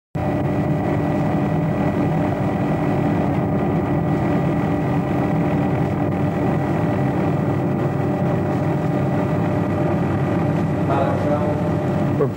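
A steady engine drone with a few constant tones over a noisy hum, holding an even level throughout.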